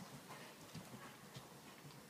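Faint, muffled hoofbeats of a horse moving on the soft sand footing of an indoor riding arena, a few dull knocks spaced about half a second apart.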